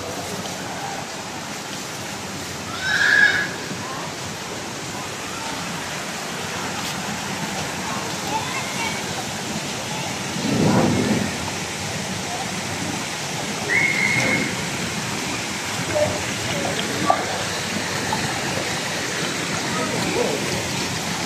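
Steady rush of a pool fountain's water falling and splashing, with distant voices and a couple of brief high shouts over it.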